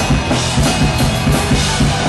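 A hardcore punk band playing loudly live, with a drum kit, bass guitar and electric guitar.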